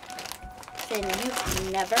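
A crinkly plastic potato-chip bag rustling and crackling as it is handled and pulled open.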